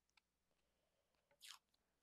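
Near silence, with a faint click just after the start and a faint, brief rustle about a second and a half in, from hands pressing washi tape onto paper.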